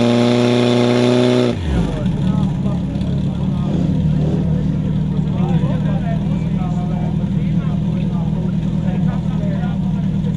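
Portable fire pump engine running steadily at high revs. About one and a half seconds in, its pitch drops suddenly and it runs on lower and rougher, under load, while water is being sprayed at the targets. Voices shout over it.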